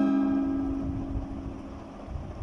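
A guitar chord, struck just before, ringing out and slowly fading, over a low rumble.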